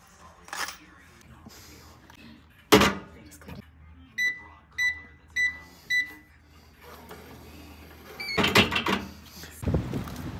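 Keypad of a Safemark hotel in-room safe beeping four times, a little over half a second apart, as a four-digit code is keyed in. A sharp click comes about three seconds in, and a louder burst of noise near the end.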